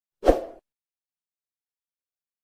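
A single short pop sound effect of an animated subscribe button being clicked, lasting about a third of a second, a quarter of a second in.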